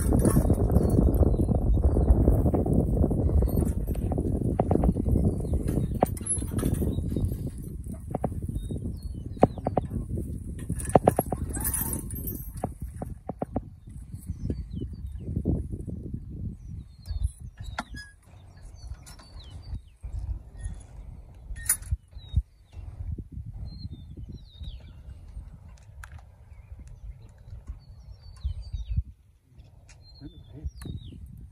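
A team of two Belgian mules walking as they pull a horse-drawn plow through garden soil, with hoof steps and scattered knocks and clinks from the harness and plow. A low rushing noise is loud in the first half and fades out.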